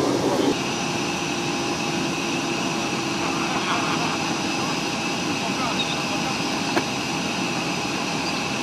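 An MC-21 jet airliner's turbines running steadily nearby: a high, even whine over a rushing hiss. Voices at the very start cut off about half a second in, and a single click comes near the end.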